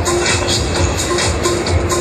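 Electronic dance music with a steady beat, low bass thumps under regular high ticks.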